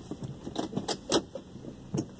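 Hands handling small objects close to the microphone inside a car: a quick run of light clicks and jangling rattles, loudest about a second in, with one more click near the end.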